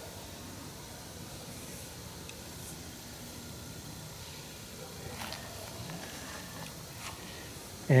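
Quiet, steady outdoor background hiss with a few faint, brief clicks scattered through it. A man's voice starts at the very end.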